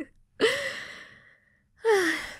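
A woman's breathy gasp that fades out over about a second, followed near the end by a second short, breathy voiced breath.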